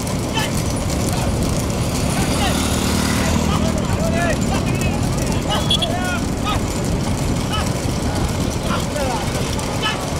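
A pack of motorcycle engines running close together, with men's shouts and calls rising over them again and again.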